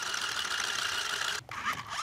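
Small electric motors of a toy remote-control stunt car whirring steadily as its wheels spin on a glass tabletop, cutting off suddenly about a second and a half in.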